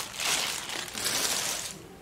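Blue plastic packaging crinkling and rustling in bursts as a replacement laptop keyboard is pulled out of it, dying away near the end.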